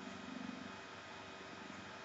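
Faint steady hiss and crackle of an old film soundtrack. A low, rapidly fluttering buzz fades out in the first second.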